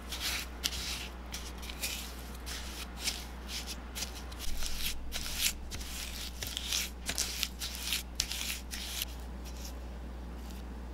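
Rubber spatula creaming softened butter and granulated sugar in a glass bowl: gritty scraping strokes, about two to three a second, stopping about a second before the end.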